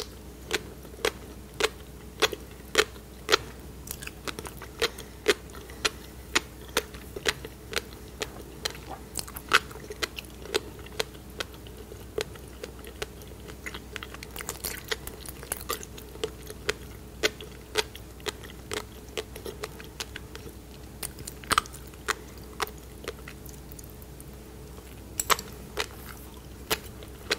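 Close-miked chewing of raw salmon coated in black tobiko (flying fish roe). The small eggs pop and crunch as sharp clicks about two a second, with wet mouth sounds between them.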